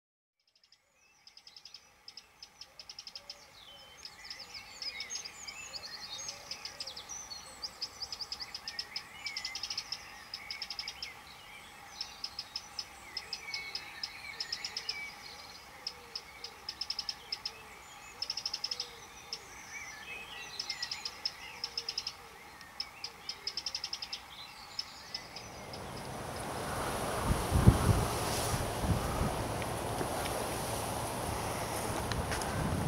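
Birds chirping and trilling in short, repeated bursts of song. Near the end, gusts of wind buffet the microphone, a loud rumble that drowns out the birds.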